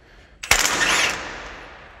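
Cordless impact wrench hammering as it loosens bolts on the windrower header's roll drive. It starts suddenly about half a second in and fades off toward the end.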